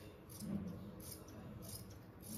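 Scissors cutting through folded cotton fabric: a few quiet, crisp snips of the blades spread through the moment.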